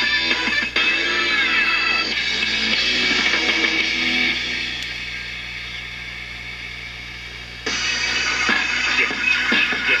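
Music from a broadcast station playing through an AA5 tube AM radio's loudspeaker. About a second in, sweeping whistle tones curve through it. The sound then fades over several seconds and jumps back up suddenly near the end.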